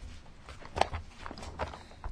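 Bible pages being leafed through: faint rustling with a few light taps, the clearest a little before the middle, over a low steady room hum.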